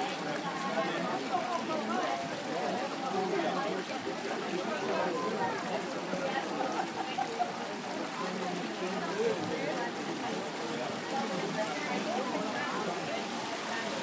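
Indistinct chatter of many people talking at once, a steady babble with no single voice standing out.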